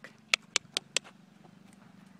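Four quick, sharp tongue clicks in a row in the first second, the cluck used to urge a horse on at the walk, over a faint low hum.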